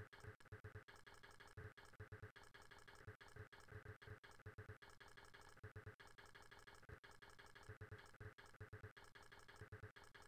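Near silence: faint room tone with many soft, short clicks.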